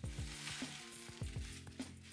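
Plastic air-cushion packaging crinkling as it is handled and pulled out of a cardboard box, loudest over about the first second, over background music with a beat.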